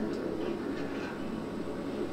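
Quiet, steady low ambient rumble from a television drama's soundtrack, with no distinct events.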